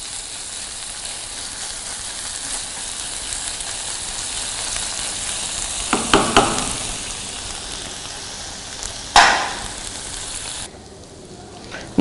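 Sliced onions sizzling in oil in a nonstick pan over a gas flame as they are sautéed to a pale brown, stirred with a silicone spatula. Louder stirring strokes come about six and nine seconds in, and the sizzle drops away near the end.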